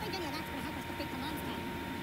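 Indistinct voices talking, with a thin steady high tone and a low hum running underneath.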